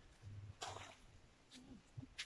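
Near silence, broken by a few faint, brief noises.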